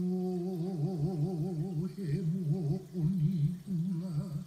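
A single voice chanting a Hawaiian mele for hula kahiko, with no drum. It holds long, low notes with a strong, regular wavering in pitch, the ʻiʻi vibrato of Hawaiian chant, and breaks briefly about two seconds in.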